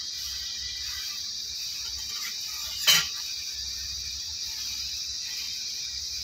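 Steady high-pitched chirring of crickets, with one sharp click about three seconds in.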